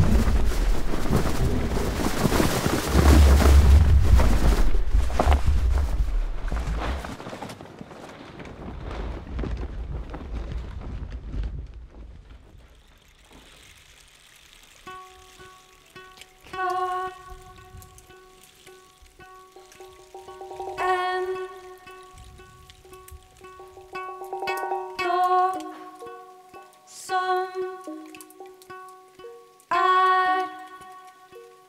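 Live music. A loud, even rushing noise with a deep rumble underneath fills the first dozen seconds and fades away. Then a few held tones sound, with sparse plucked notes ringing out every few seconds.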